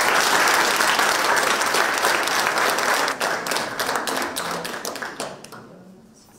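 An audience applauding, loud at first and gradually fading away, dying out shortly before the end.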